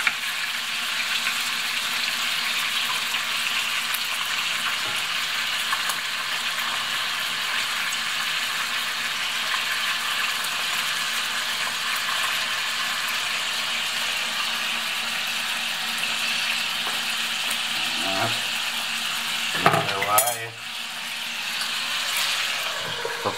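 Kupaty sausages sizzling steadily in hot fat in a frying pan, while a wooden spatula turns them. A few sharp knocks come near the end.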